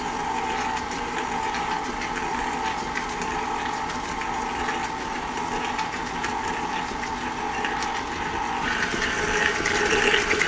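KitchenAid Artisan stand mixer running steadily, its flat beater creaming butter and sugar in the steel bowl. A higher tone joins the motor hum near the end.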